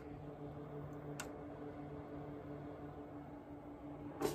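Cooling fans of a Goldshell HS3SE Handshake ASIC miner running with a steady hum, with a single faint click about a second in.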